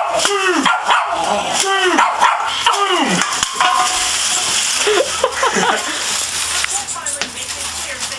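Small dog barking repeatedly at a man in a tin-foil costume: a quick run of sharp barks in the first three seconds, then a few shorter yips, over the crinkling of the crumpled aluminium foil as he moves.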